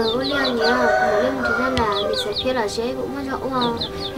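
Chickens clucking, with short high chirps recurring every second or so, over steady sustained notes and a slowly wavering melody that run on underneath.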